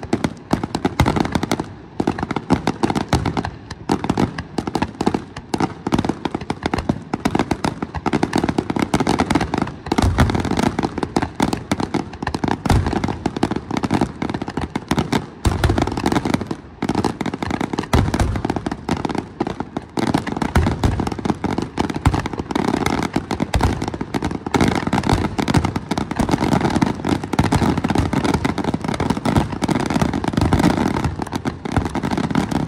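Aerial fireworks shells bursting in rapid succession, with continuous crackling and popping and several deeper booms in the middle of the stretch.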